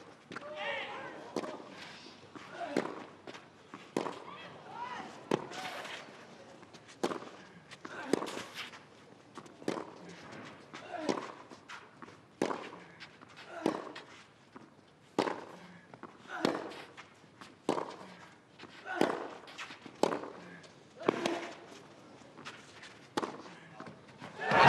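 Tennis rally on clay: racquets striking the ball about every second and a half, back and forth for around eighteen shots, many of the strikes accompanied by a player's grunt.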